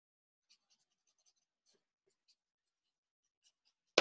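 Faint, scattered scratching strokes of a drawing tool on paper, ending in one sharp tap.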